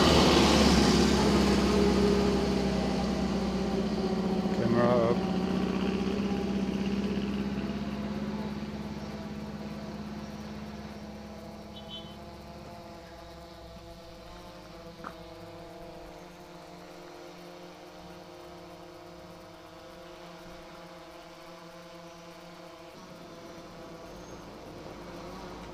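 A vintage open-top car's engine passing close at the start, then fading steadily over about ten seconds as it drives away, leaving a fainter steady hum.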